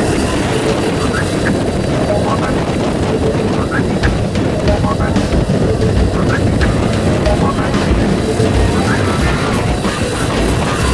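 Jump plane's propeller engines running loudly and steadily close by, with prop wash buffeting the microphone and voices shouting over the noise.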